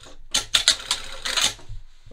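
Industrial single-needle lockstitch sewing machine stitching through heavy fleece along a zipper, a quick run of loud, close-packed needle clicks over a low motor hum that stops shortly before the end.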